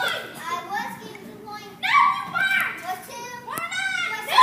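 Children's voices speaking lines of stage dialogue, with a short sharp click shortly before the end.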